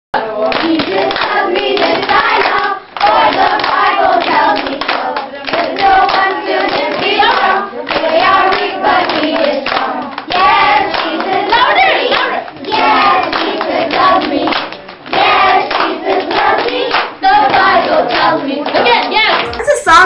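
A group of children singing a song together and clapping along to it.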